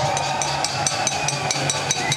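Outdoor demonstration noise between speech: a held, horn-like tone under a quick, steady ticking beat of about five strokes a second.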